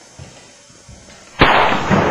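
A single gunshot about one and a half seconds in: sudden and loud, with a noisy tail that lasts about half a second. Faint knocks of movement come before it.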